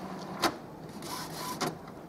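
Epson XP-3100 inkjet printer's mechanism starting its cartridge-replacement routine: a low motor hum, a sharp click about half a second in, then a fainter whir and another click near the end, as it readies the print-head carriage to move to the cartridge-change position.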